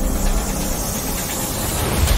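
A rushing hiss that swells toward the end and stops with a sharp hit.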